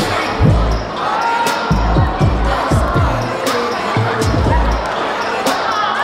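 Pop song played over loudspeakers: sung vocals over a deep, pitch-dropping bass drum that hits several times a second, with hi-hat ticks on top.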